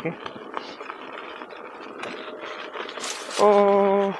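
Electric unicycle rolling on a dirt path, its tyre crunching over gravel with small clicks. Near the end comes a loud, steady buzzing horn tone lasting under a second, sounded as the rider comes up on people ahead.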